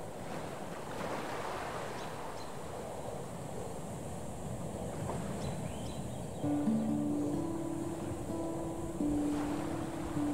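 Steady rushing beach ambience of ocean surf and wind. About six and a half seconds in, music with long held notes comes in over it.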